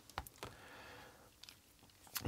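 Near silence: room tone, with two faint short clicks about a quarter and half a second in.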